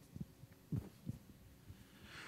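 Quiet room tone with several soft, low thuds spread over the first second and a half.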